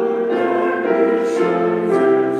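Church choir singing a hymn, sustained chords shifting every half-second or so.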